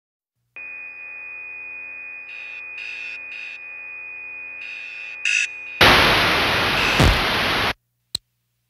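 Electronic intro sound: a steady high tone over a low hum, with short bursts of static breaking in several times. Then a loud burst of white-noise static lasts about two seconds and cuts off suddenly.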